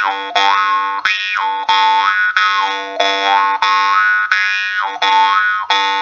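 Jaw harp being plucked about every two-thirds of a second over a steady buzzing drone, the bright overtones sweeping down and back up after each pluck.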